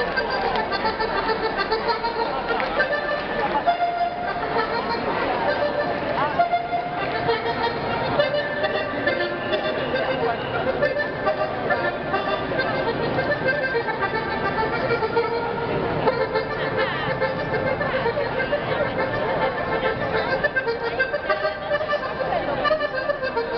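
Traditional Sardinian folk music with an accordion melody of held, steady notes, over the continuous chatter of a large crowd.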